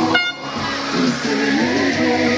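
A plastic party horn blown in one short toot just after the start, over music with singing.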